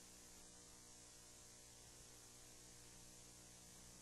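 Near silence: a faint, steady electrical mains hum with hiss from the recording system.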